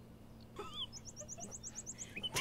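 Small birds chirping faintly: a few curving calls about half a second in, then a quick run of about eight short, high chirps.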